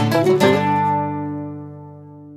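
A short intro phrase of quick plucked-string notes that ends about half a second in on a chord, which rings on and slowly fades away.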